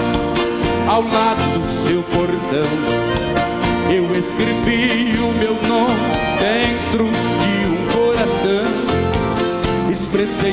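Live sertanejo band music: accordion, acoustic guitar and drums playing at a steady beat.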